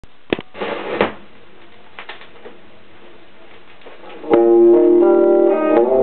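Vinyl LP playing on a turntable: a few clicks and pops and a short burst of surface crackle in the lead-in groove, then about four seconds in a blues recording starts with loud ringing chords, one sliding up in pitch near the end.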